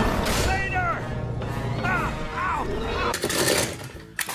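Cartoon soundtrack with music and sound effects under a steady low hum, including several short swooping tones. From about three seconds in, die-cast toy cars clatter as a hand rummages through a pile of them.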